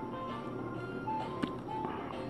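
Soft background music with held notes, and a single light tap about one and a half seconds in.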